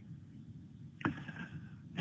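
A quiet pause on a webinar voice feed: low steady background hiss. About a second in there is a short, soft noise that starts suddenly and fades away over most of a second.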